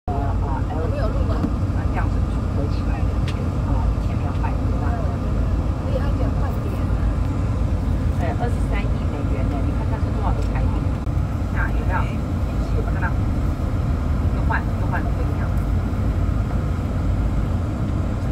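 Steady low rumble of a bus's engine and tyres heard from inside the cabin as it drives, with faint voices of people talking in the background.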